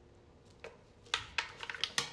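A handful of light clicks and taps from the tire inflator's hose and cord being handled, starting about half a second in and coming closer together in the second half.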